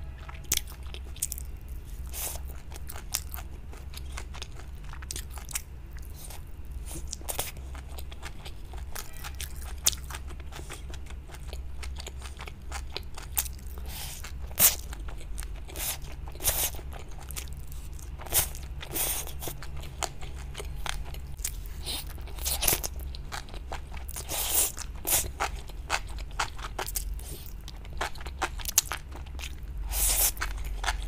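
A person crunching and chewing fried vegetable skewers: many short, sharp crisp bites scattered irregularly throughout.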